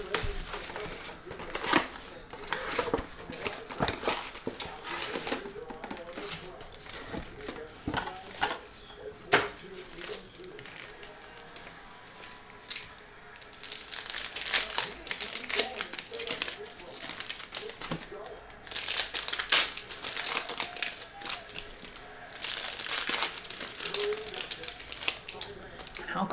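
Cellophane shrink-wrap and foil trading-card pack wrappers crinkling and tearing as a box of cards is unwrapped and its packs handled, in irregular crackles throughout.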